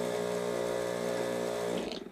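Mini vortex mixer (a 5200 rpm touch-activated lab/paint shaker) running with a small bottle of water and a steel ball bearing pressed onto its cup, its motor giving a steady hum. The hum cuts out near the end and the motor winds down as the bottle is lifted off.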